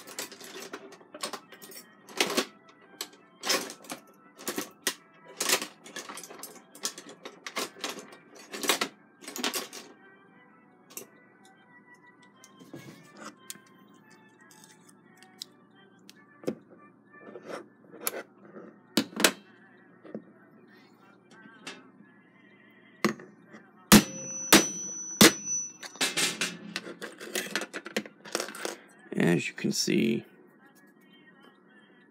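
Steel pliers clicking and scraping against a clock movement's steel plate and arbor while gripping and prying a press-fit shuck (cannon) pinion off. Irregular sharp metallic clicks, thick in the first ten seconds and sparser after, with a cluster of sharper snaps and a brief high ring about 24 seconds in.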